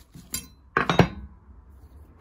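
Small flat steel parts clinking against each other on a workbench: a light clink, then a louder clatter of metal-on-metal hits about a second in.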